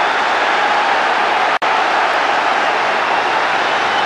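Football stadium crowd noise, a steady wash of many voices with no single call standing out. It breaks off for an instant about a second and a half in.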